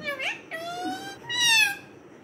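Rose-ringed parakeet imitating a cat's meow: three meow-like calls, the last the loudest.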